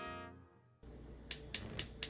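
Gas stove burner's spark igniter clicking about four times, roughly four clicks a second, as the knob is turned to light the burner. Background music fades out just before the clicks.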